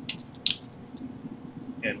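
Butterfly knives being handled: a short metallic clatter, then a louder sharp clack about half a second in.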